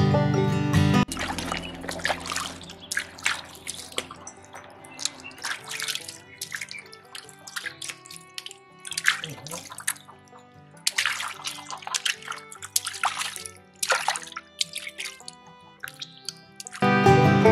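Water splashing and dripping in a plastic bucket as hands rinse a raw lamb carcass, in irregular small splashes, with faint music underneath. Music is loud for about the first second.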